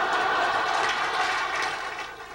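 A large audience laughing together in response to a joke, the laughter dying down near the end.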